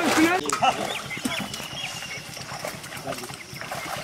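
Men's voices calling out at the start, then fainter voices with scattered splashes of fish thrashing in a seine net in shallow water.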